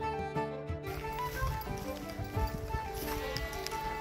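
Instrumental background music with a held melody line, and from about a second in a layer of outdoor sound with irregular soft low thumps beneath it.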